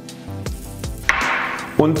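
Soft background music, with a short rustling hiss about a second in as raw cane sugar is poured into the Thermomix's steel mixing bowl.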